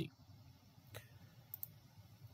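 Faint computer mouse clicks: one about a second in, then a quick pair about half a second later.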